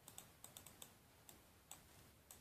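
Computer mouse buttons clicking: about eight faint, sharp clicks at uneven intervals over a low steady room hum.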